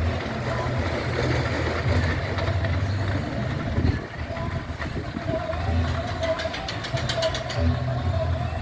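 A steel fairground roller coaster running: a low rumble from the cars rolling on the track and from the ride's machinery, with a burst of rapid clicking about six seconds in.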